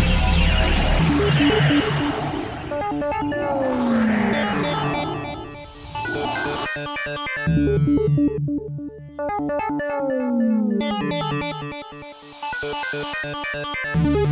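Uplifting trance track built on repeating synthesizer riffs. The heavy bass drops out about two seconds in, a falling synth glide sounds twice, and swells of hiss rise twice in between.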